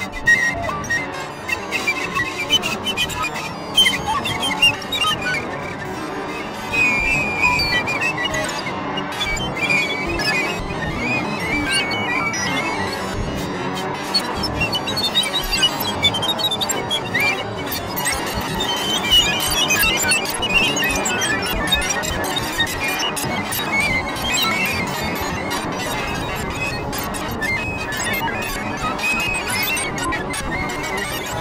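Free-improvised electroacoustic music: flute amplified and processed live by electronics in a dense, rough texture of flickering high squealing tones and crackle. There are sharp loud jabs in the first few seconds, then it settles into a steadier mass.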